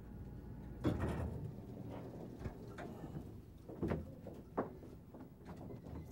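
Stainless-steel elevator doors sliding open, with a few short clunks and knocks.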